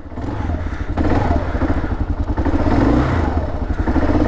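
A 2003 Kawasaki KLR650's 651 cc single-cylinder four-stroke engine running on choke, warming up after starting. It grows a little louder in the first second, then holds steady.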